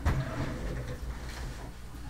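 Wooden sample-cabinet drawer: a knock as it shuts, then a drawer sliding along its runners with a low rumble.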